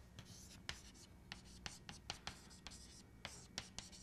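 Chalk writing on a blackboard, faint: a quick run of short taps and scratches as letters are written.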